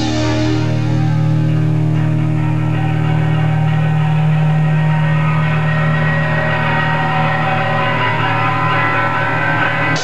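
Live rock band: the drums stop just after the start, leaving distorted electric guitar and bass holding one sustained, droning chord, with high ringing tones building through it. The drums come back in at the very end.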